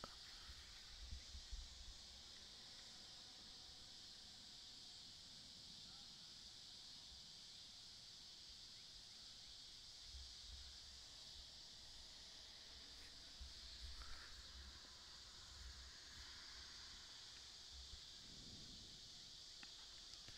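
Near silence: faint outdoor field ambience, a steady high hiss with a few soft low bumps.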